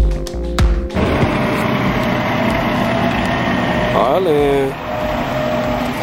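Background music with a heavy beat that stops about a second in, giving way to the steady running of a garbage truck's engine. A short voice rises and falls about four seconds in.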